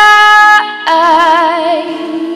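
A young woman singing held, wordless notes into a microphone over sustained keyboard chords: one long note breaks off about half a second in, and a new note with a wide, even vibrato follows.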